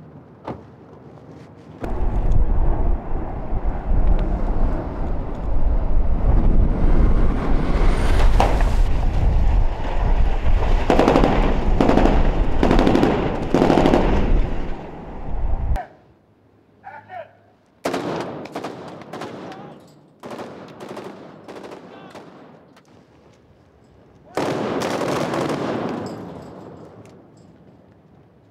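Gunfire in rapid bursts, like a machine gun, over a heavy low rumble that cuts off suddenly about halfway through. Scattered single sharp cracks follow, then another loud burst near the end.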